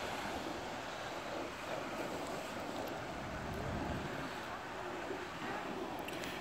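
Steady wind noise on the microphone, an even low rush with no distinct events.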